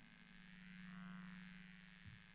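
Near silence: a faint, steady low hum from the sound system that swells slightly midway, with the microphone apparently cut out.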